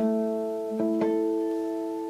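Three natural harmonics at the seventh fret plucked on a nylon-string classical guitar, starting on the sixth string (tuned down to D) and moving to the fifth. The first sounds at once, the other two close together just under a second in, and all ring on together as clear, pure tones.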